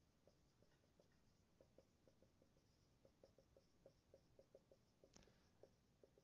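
Very faint squeaks and taps of a marker writing on a whiteboard, a quick irregular run of short ticks, several a second.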